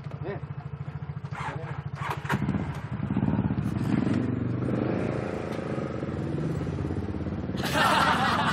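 Motorcycle engines idling with a steady pulse, then revved up about two seconds in as the bikes pull away, the engine sound rising and filling out. A loud rushing noise sets in near the end.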